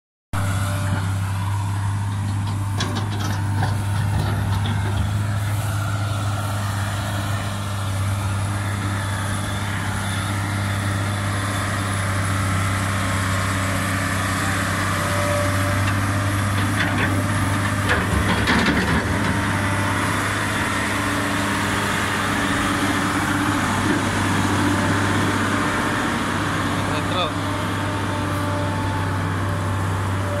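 Kobelco crawler excavator's diesel engine running steadily while it digs a drainage channel in wet soil. A short louder noise from the work comes a little past halfway.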